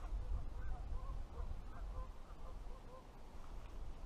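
Faint calls of distant birds: a string of short, repeated calls over a low wind rumble on the microphone.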